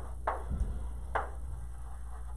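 Chalk writing on a blackboard: two short chalk scratches about a second apart, over a steady low hum.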